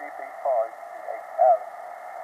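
A man's voice received over an amateur radio transceiver and heard through its speaker: thin, narrow-band speech over a steady bed of band noise.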